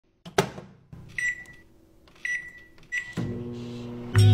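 Microwave oven sound effect: a click, then three short high beeps, then the oven starts running with a steady hum near the end.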